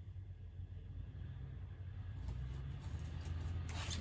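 Quiet room hum with faint handling of a paper sheet of washi-tape strips on a desk, and a short rustle near the end.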